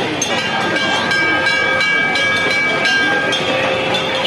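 A steady, high whistle-like tone with two pitches, held for about two and a half seconds over the babble and bustle of a crowded fair.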